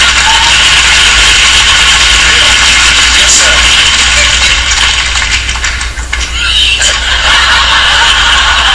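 Studio audience applauding and cheering, steady and loud, with a brief dip about six seconds in.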